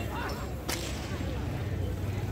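A single sharp crack about two-thirds of a second in, over a steady low hum.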